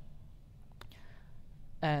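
Pause in a talk: faint room tone with one short click a little under a second in, then speech resumes near the end.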